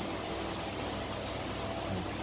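Steady, even hiss of background noise, room tone with no distinct event.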